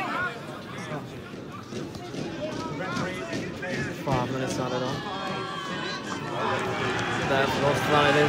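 Football crowd at a match: overlapping, indistinct shouts and calls from spectators, growing louder near the end.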